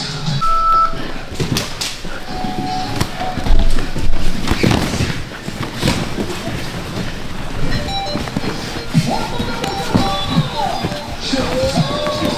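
Background music with tones that glide up and down, and a deep thump about three and a half seconds in.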